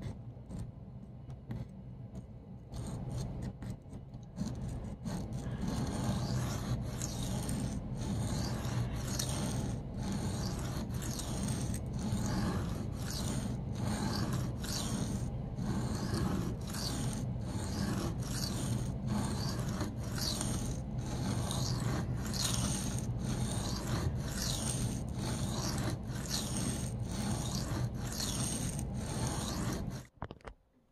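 Steel blade of a Spyderco folding knife rasping across a wet Venev diamond sharpening stone in repeated hand-sharpening strokes, a little faster than one a second. The strokes are quieter for the first few seconds and then settle into an even rhythm.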